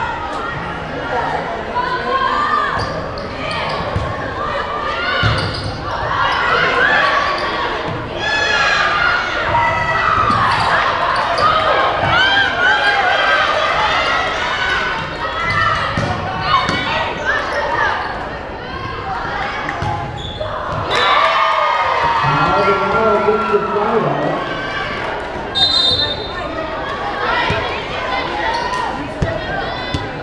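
Volleyball being played in a reverberant gym: ball hits and bounces on the court among many overlapping voices of players and spectators. A short referee's whistle blast sounds about 26 seconds in.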